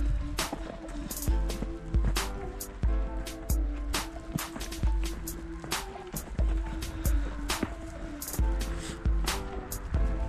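Background music with a steady beat: deep bass-drum hits and sharp drum strokes under sustained melodic notes.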